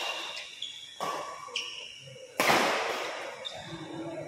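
Badminton rally on an indoor court: sharp racket strikes on the shuttlecock and short shoe squeaks on the court floor. About two and a half seconds in comes the loudest sound, a hard smack that rings out in the hall for about a second.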